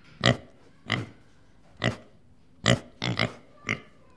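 Domestic pigs grunting: a series of about seven short grunts, two of them in quick succession a little after three seconds in.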